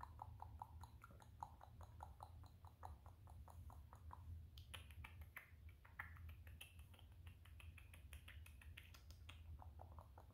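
Long fingernails scratching through dogs' fur: a faint, rapid run of soft scratching clicks, about four to five strokes a second. About halfway through the strokes turn sharper and higher.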